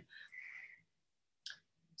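Near silence, with a faint soft sound in the first second and a single short click about one and a half seconds in.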